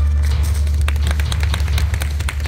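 Scattered hand clapping, many irregular sharp claps, over a steady low rumble, as the last notes of traditional Korean accompaniment music die away at the start: applause as a performance ends.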